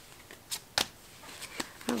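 Tarot cards being drawn from the deck and laid down for clarifiers: a few short, sharp card snaps, the two loudest within the first second.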